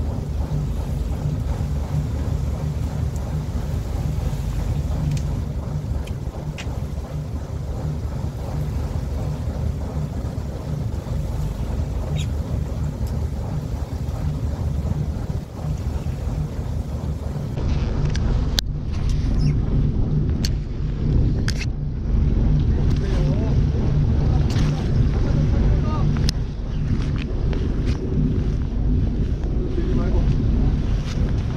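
Fishing boat's engine running with a steady low drone, with wind buffeting the microphone.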